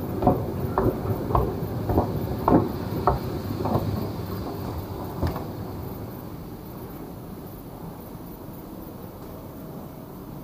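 Escalator running with a low rumble and sharp clacks about twice a second. The clacks stop about four seconds in and the rumble fades as the escalator is left behind.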